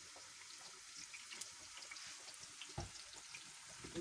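Faint hiss and light crackle of sweet potato fries frying in hot oil, with one low thump about three seconds in.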